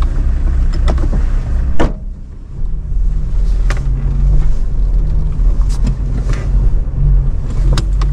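Car engine and road noise heard from inside the cabin, with a sharp thud about two seconds in as the rear door shuts; the engine hum then carries on as the car moves off.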